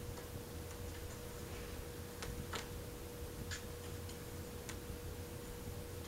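A handful of light, irregularly spaced clicks and taps as a Siamese cat bats a small hedgehog toy about on carpet, over a faint steady high hum.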